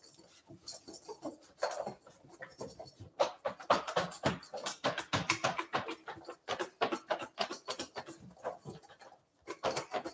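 Kale salad and dressing being shaken in a lidded stainless steel bowl: an uneven, rapid run of soft knocks and swishes as the leaves are thrown against the metal. It is sparse at first and gets busier from about three seconds in.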